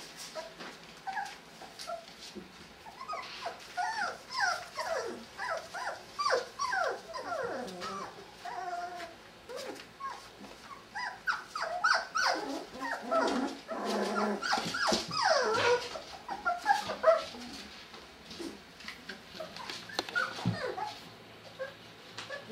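Five-week-old Brittany puppies whining and yipping in many short, high calls that slide up and down, in two long bouts with a lull about ten seconds in.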